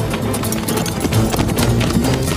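Horses' hooves clopping in a quick, irregular patter, over background music that holds low sustained notes.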